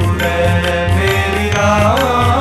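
Sikh shabad kirtan: a man singing devotional Gurbani over a sustained harmonium with tabla strokes keeping the beat, the voice sliding up in pitch near the end.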